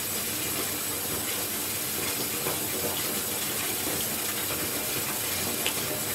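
Bathtub tap running steadily, water pouring into a filling bathtub.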